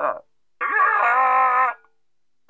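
Cartoon character's wordless vocalizing: a sound falling in pitch that cuts off just after the start, then, after a short gap, a held mumble of about a second that bends up briefly and then stays level before stopping abruptly.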